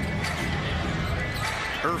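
A basketball being dribbled on a hardwood court over the steady rumble of an arena crowd; a commentator's voice comes in briefly near the end.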